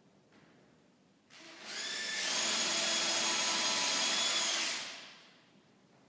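An electric power tool's motor starting about a second in, running steadily with a high whine for about three seconds, then winding down.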